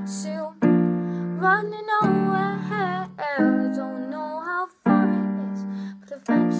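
A young woman singing an original song over piano chords; a new chord is struck roughly every second and a half while her voice bends and wavers over it.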